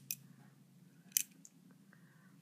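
Metal clicks from a balisong trainer being handled: the steel handles and latch tap together twice at the start, then one sharper click about a second in, with a few faint ticks near the end.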